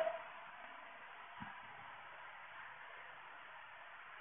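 Faint steady hiss of room tone, with one soft low thump about one and a half seconds in.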